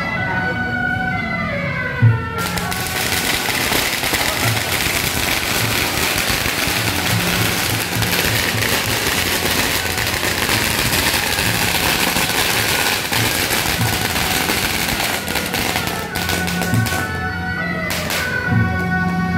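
A long string of firecrackers going off in a rapid, continuous crackle for about fourteen seconds. It starts with a sharp bang about two seconds in and drowns out the procession music, which is heard before it and again near the end.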